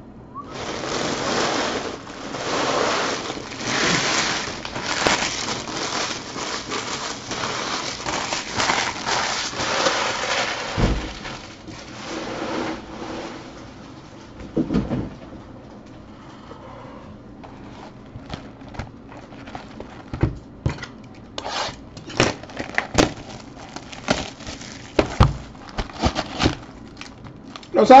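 Foil trading-card pack wrappers crinkling and rustling as they are gathered up for the first dozen seconds or so. After that comes a quieter stretch of scattered light taps and knocks as cardboard card boxes are handled and set down.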